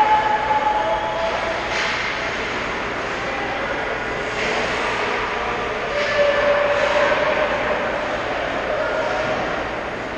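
Indoor ice rink ambience during a hockey game: a steady rushing drone, with distant shouts and a few faint knocks of sticks and pucks from play at the far end.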